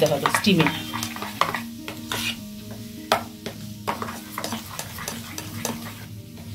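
Steel spoon stirring and scraping thick rava (semolina) idli batter in a stainless steel bowl, with irregular short scrapes and clinks against the bowl. Soft background music with sustained notes plays underneath.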